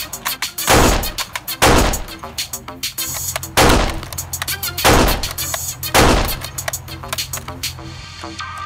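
Five loud gunshot sound effects over electronic background music, spaced one to two seconds apart.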